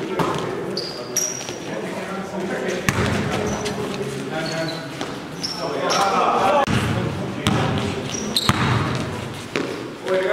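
Basketball game sounds in a large gym: a ball bouncing on the court floor with sharp thuds, sneakers giving short high squeaks, and indistinct players' voices, all with the hall's echo.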